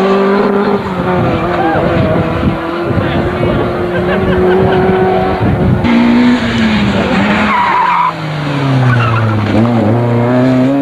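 Rally car engines at high revs as cars race along a narrow stage road past the camera. Near the end a car lifts off, its revs falling, then picks up again as it powers past.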